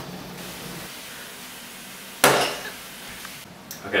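A steady hiss of room noise, then one sharp thud about two seconds in, as pizza dough is slapped down on a wooden tabletop while being stretched.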